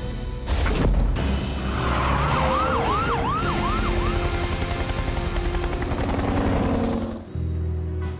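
Cartoon soundtrack music with a siren wailing in about five quick rising-and-falling sweeps, over a low vehicle rumble as the rescue vehicles roll out.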